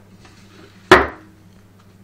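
A single sharp knock of something hard, about a second in, with a short ringing after it.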